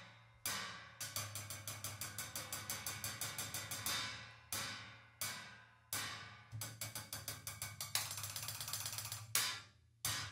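Solo played on cymbals with drumsticks: single strikes left to ring and die away, between fast even runs of about seven strokes a second. Near the end comes a dense buzzing roll and a hard strike.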